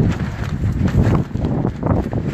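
Wind buffeting the microphone: an uneven low rumble with soft irregular thumps.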